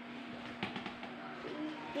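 Cloth rustling in a cluster of quick, sharp rustles about half a second in as a small child handles a garment of clothes, over a steady low hum, with a faint voice near the end.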